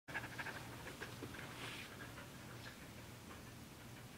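Dog panting faintly and quickly, over a low steady hum.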